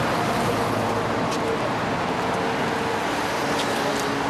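Steady road traffic noise, an even rush of passing vehicles.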